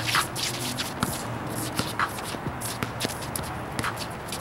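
Sneakers scuffing and shuffling on an outdoor concrete basketball court as players run and shift, a string of short scrapes with a few sharp knocks.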